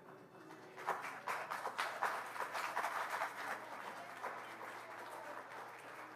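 Audience applauding, starting about a second in, strongest over the next few seconds and thinning out toward the end.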